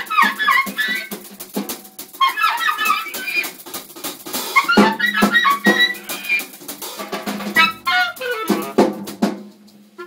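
Live clarinet and drum kit duo in free-jazz improvisation: quick, leaping clarinet phrases over scattered drum and cymbal strikes. The playing thins out near the end.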